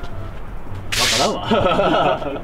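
A short, sharp swish about a second in, the kind of whoosh sound effect laid under a pop-up caption, followed by voices.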